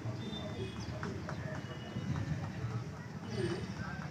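Street noise at a busy level crossing: background voices talking, with scattered light clicks and knocks.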